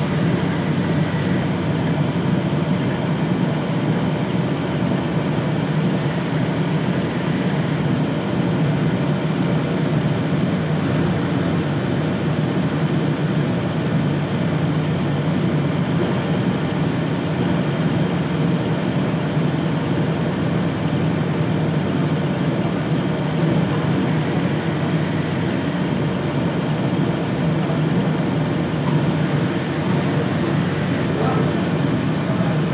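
Siruba industrial overlock sewing machine with a roller puller attachment running continuously, stitching a fabric strip into piping cord: a steady, even mechanical whirr with a low hum.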